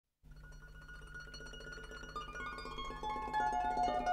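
Solo harp playing a quick run of plucked notes that starts about a fifth of a second in and grows steadily louder. A low steady hum lies underneath.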